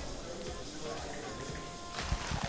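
Oil in an electric deep fryer bubbling and sizzling steadily, with breaded food just dropped in, under faint background music.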